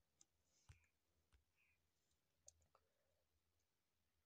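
Near silence, with a handful of faint, brief clicks scattered through it.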